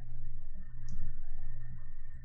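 Light clicking over a steady low hum, with one sharper click about a second in, typical of mouse clicks while navigating in a sculpting program.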